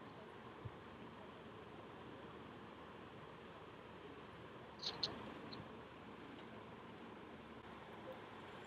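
Quiet room tone with a steady faint hiss. About five seconds in come a few soft computer-keyboard keystrokes.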